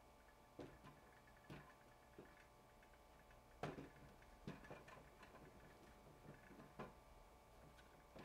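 Faint, sparse clicks and taps of miniature dollhouse parts being handled and set in place, about half a dozen over the stretch, the loudest a little before the middle, against near-silent room tone.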